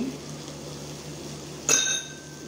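A metal teaspoon clinks once against metal while chopped parsley is being shaken onto potatoes in a frying pan. It gives a short, bright ringing near the end, over a low steady hiss.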